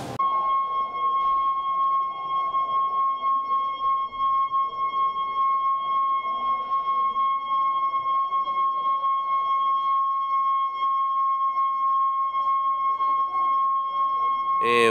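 Steady electronic alarm tone at one unchanging high pitch, sounding continuously as an evacuation signal, over faint crowd noise.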